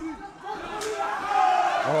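A kick landing on bare skin with a single sharp slap, about a second in, followed by the crowd shouting in reaction.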